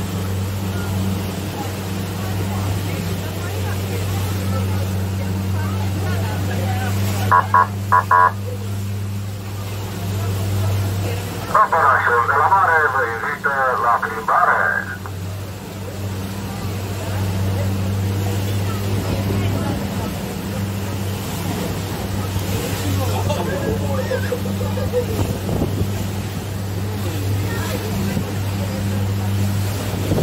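Boat engine running with a steady low drone over water rushing in the churning wake. About seven seconds in come a few short, loud high-pitched blasts, and about twelve seconds in a louder tonal burst lasts around three seconds.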